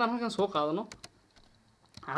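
A voice speaking for about the first second, then a few computer-keyboard key clicks, two close together about a second in and fainter ones after.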